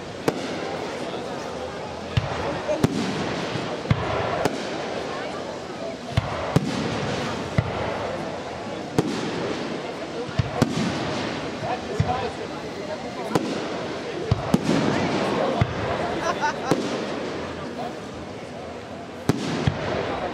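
Aerial firework shells bursting overhead in a display, with a sharp bang roughly every second at uneven intervals and a continuous crackling haze between them.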